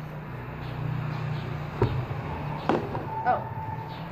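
Slime being kneaded and stretched by hand, with three sharp pops of trapped air bursting, the loudest a little under two seconds in and two more close together near the end.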